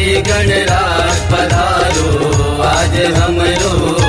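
Chhattisgarhi devotional Ganesh song music with a steady drum beat under sustained and wavering melodic lines.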